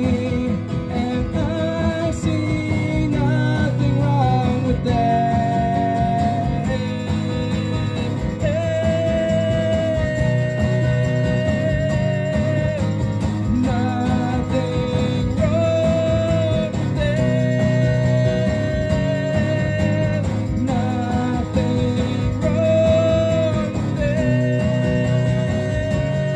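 Acoustic guitar strummed steadily under a melody of long held notes, an instrumental break in a rock song.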